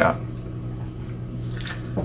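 Tarot cards handled by hand on a paper chart, with a soft brush of card against paper about one and a half seconds in, over a steady low hum.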